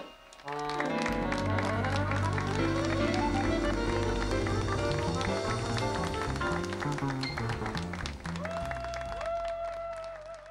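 Accordion playing fast runs with a jazz combo of double bass, drums and keyboard, after a short break at the start. Near the end the music settles on a long held note with vibrato and begins to fade.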